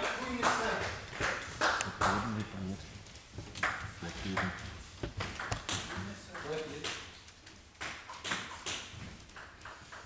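Celluloid table tennis ball bouncing, an irregular string of sharp clicks, among people talking.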